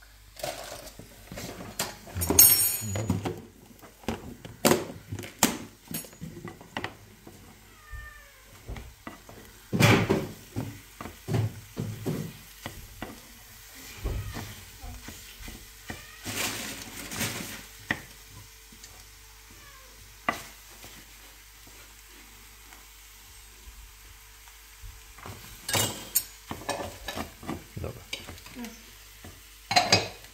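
A wooden spatula scraping and tapping around a small frying pan as scrambled eggs are stirred, with a faint sizzle from the cooking eggs. A cat meows now and then.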